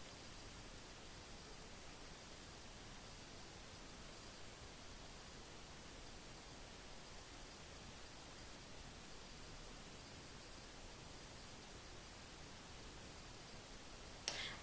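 Faint, steady hiss of the recording's background noise, with no distinct sound events.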